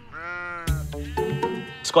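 Sheep bleating twice, a short call and then a longer one.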